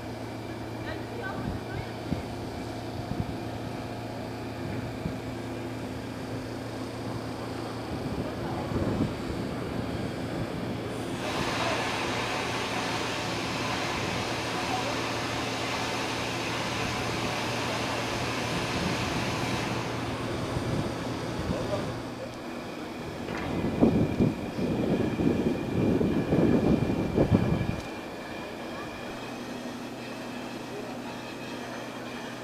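A standing steam locomotive with a low steady hum, and an even hiss of escaping steam that starts abruptly about eleven seconds in and stops about nine seconds later. Near the end come a few seconds of loud, irregular rumbling.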